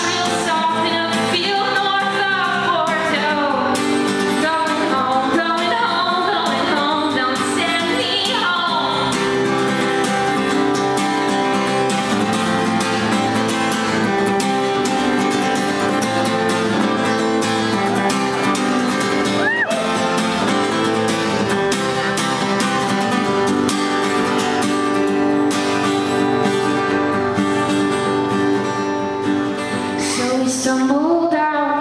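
Live acoustic guitar strummed steadily, with a woman singing over it for roughly the first nine seconds; after that the strummed chords carry on as an instrumental stretch.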